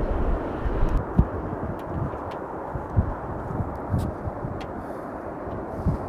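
Steady rushing roar of a jet airliner flying past at low altitude, fading gradually toward the end, with low thumps of wind buffeting the microphone.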